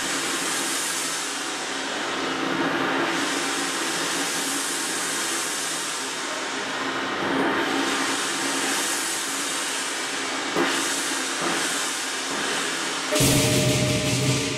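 Southern lion dance band's cymbals played as a sustained shimmering wash that swells and fades in waves every few seconds, with the drum mostly silent. About a second before the end the drum and cymbals come in loudly together.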